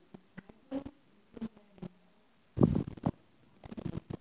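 Handling noise from the recording device being moved: scattered light clicks and knocks, with a louder rustling bump about two and a half seconds in.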